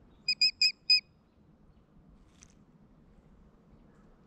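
A bird calling close by: four short, loud, high notes in quick succession within the first second, each dipping slightly in pitch at its end. A faint tick follows about two seconds later.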